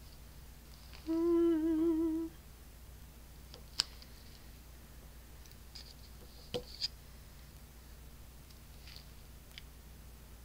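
A woman humming one short wavering note for just over a second, about a second in. After it come a few faint, sharp clicks and taps of small craft tools and pieces being handled on the table.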